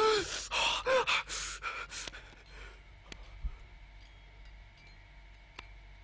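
A man gasping and groaning with strain: several loud, breathy gasps and a short groan in the first two seconds, then quieter with a few faint knocks.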